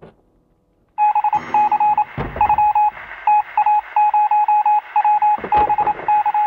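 Rapid electronic beeps of a single pitch, keyed in quick uneven groups like Morse code, thin and radio-like, starting about a second in. Two low thuds fall among them.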